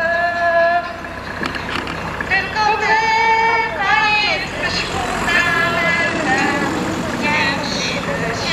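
Singing carried over a horn loudspeaker, with long held notes that waver in pitch, over a steady low rumble.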